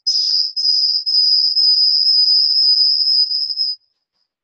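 Microphone audio feedback: a loud, high-pitched whistle held at one pitch. It stutters briefly at first, then holds steady and cuts off suddenly near the end.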